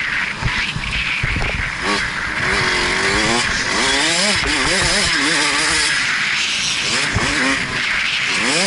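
KTM 65SX two-stroke dirt bike engine revving, its pitch rising and falling again and again from about two seconds in as the throttle is worked, under steady rushing wind noise on a helmet-mounted camera.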